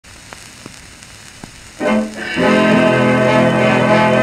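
A 78 rpm shellac record of a dance orchestra playing a fox-trot. For the first couple of seconds only the surface hiss of the run-in groove is heard, with three faint clicks. About two seconds in, the band strikes an opening chord and then plays on loudly in sustained chords.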